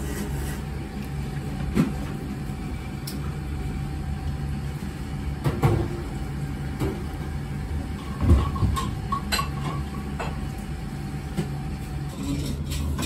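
Steady low hum of a ramen shop's interior, with a few short knocks and clinks of tableware, the loudest one a little after eight seconds in.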